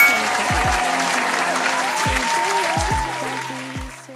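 A burst of applause and cheering over music with bass drum hits, tapering off near the end.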